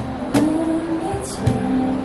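Street band playing: a held note over acoustic guitar and keyboard, with cajón hits about once a second.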